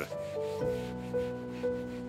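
A hand wiping a cloth over a counter top, a soft rubbing, under background music with long held notes that come in about half a second in.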